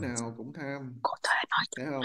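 Quiet speech: one person's voice talking softly in short phrases.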